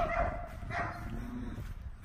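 A dog barking, in short pitched calls.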